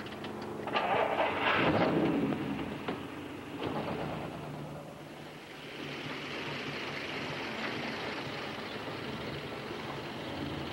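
A car engine gets louder about a second in, then runs steadily as a 1950s convertible drives off.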